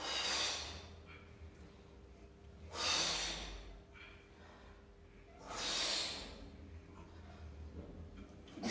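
A man's forceful exhalations while hanging from a pull-up bar doing windshield-wiper leg swings: three hard breaths out, about three seconds apart, one with each rep.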